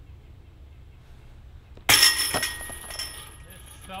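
A putted golf disc striking a disc golf basket: a sudden metallic crash of chains about two seconds in, with a high jingling ring that fades over about a second.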